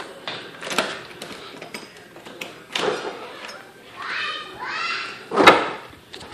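A glass exterior door being opened and gone through: clicks of the knob and latch, a drawn-out squeak about four seconds in, and a sharp knock, the loudest sound, about five and a half seconds in.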